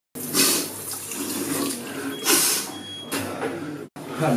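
Water running from a tap into a small washbasin, with three louder splashes as water is cupped up to the face.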